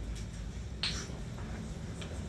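A quiet lull on a live stage: a steady low hum from the stage amplifiers and PA, with scattered faint ticks and one sharp click a little under a second in.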